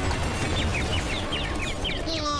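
Animal-like calls: a rapid string of short, high, falling chirps, about five or six a second, over a low rumbling noise.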